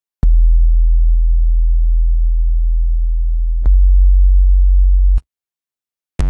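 Deep synthesized sub-bass notes with no drums. One note starts with a click and is held about three and a half seconds, slowly fading. It gives way to a second, louder note that cuts off abruptly about five seconds in.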